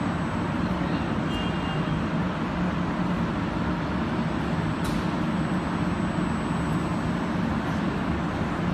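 Industrial machinery running steadily: a continuous low drone with an even level, and a faint click about five seconds in.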